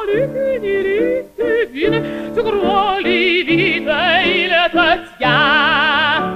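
Operatic mezzo-soprano singing with a wide vibrato over piano accompaniment. The voice moves through several phrases, pauses briefly for a breath about five seconds in, then holds a long note.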